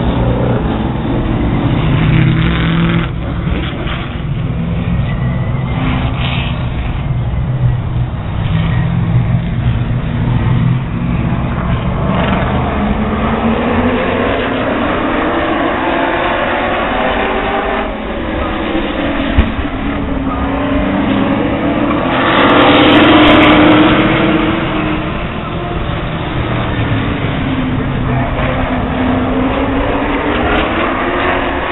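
Late model stock car V8 engines running around an oval track, the engine pitch rising and falling as the cars pass. The sound is loudest as the cars go by close about 22 seconds in.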